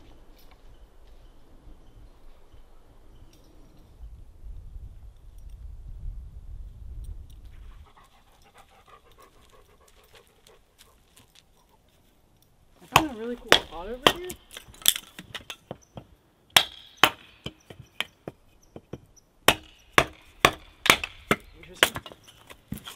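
A hatchet splitting kindling on a wooden chopping block: a run of sharp wooden knocks, roughly one or two a second, starting a little past halfway. Before that, a dog sniffing and panting faintly.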